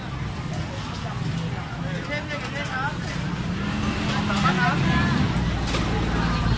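A car engine running at low speed close by, its hum rising and falling about four to five seconds in, over the chatter of a crowded street.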